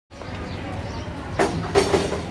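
Steady low rumble of background noise, with two short knocks about one and a half seconds in.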